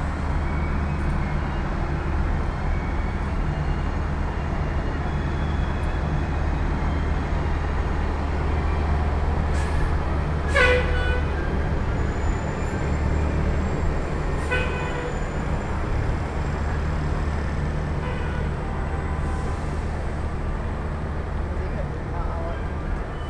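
Steady low engine drone of buses and road traffic. Two short, sharp pitched sounds cut through it about ten and fourteen seconds in, the first the louder.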